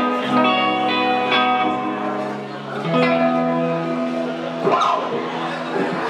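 Amplified electric guitars holding sustained, ringing chords that change every second or so, with no drum beat. About five seconds in, a short rising sweep cuts across the chords.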